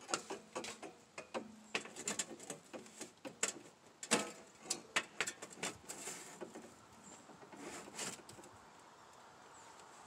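Sheet-metal stovepipe sections scraping and clicking as they are pushed together and fitted onto an elbow pipe: a run of short, irregular clicks and scrapes that thins out after about six seconds.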